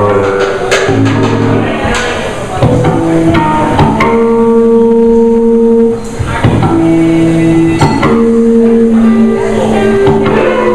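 Live band playing: guitars and bass over a drum kit, with long held notes and drum and cymbal strikes, in a large room.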